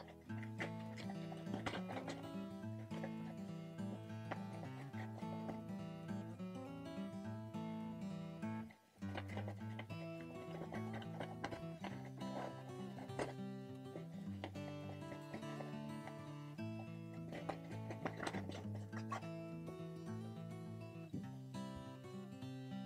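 Quiet background music with a soft, even accompaniment that briefly drops out about nine seconds in.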